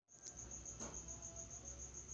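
A faint, high-pitched trill pulsing about eight times a second, insect-like as of a cricket, over low room hum, in a pause of a home voice recording. The sound cuts out completely for an instant right at the start.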